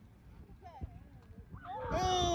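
Faint distant voices across an open field with a single soft thump, then near the end a loud, drawn-out wordless shout that falls in pitch.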